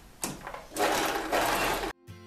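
Domestic sewing machine running a short burst of stitching, a loud, dense mechanical whirr that cuts off abruptly just before the end.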